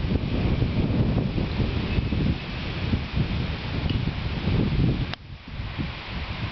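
Wind buffeting the microphone: a gusty, uneven low rumble that drops away suddenly with a click about five seconds in.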